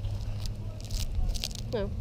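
Wood-chip mulch crunching and crackling in scattered short clicks, over a steady low hum.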